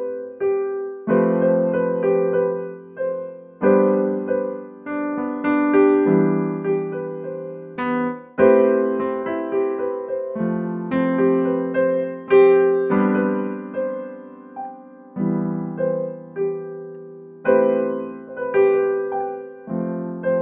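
Digital keyboard in a piano voice playing a slow chord progression: an A minor chord in the left hand under a B and C in the right, moving to an F major chord near the end. A new chord is struck about every two and a half seconds and fades before the next.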